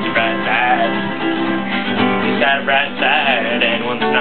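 Acoustic guitar being strummed, a steady run of chords.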